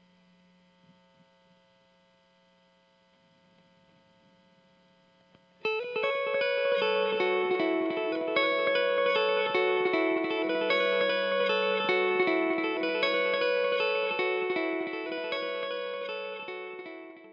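Electric guitar through a Kemper profiling amp on a washy clean tone with dotted-eighth delay at 140 BPM: a picked single-note part whose notes repeat as a cascade of echoes. Only a faint ringing tail is heard at first; the part comes in loudly about five and a half seconds in and fades near the end.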